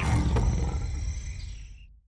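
Cartoon lion roar sound effect ending a logo sting: a deep rumble that fades away to silence, with a short click just under half a second in.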